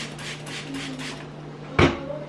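Quick, evenly spaced squirts from a plastic trigger spray bottle of cleaner, six or seven a second, stopping about a second in. Near the end comes one sharp knock, the loudest sound, as the bottle is set down on the stone countertop.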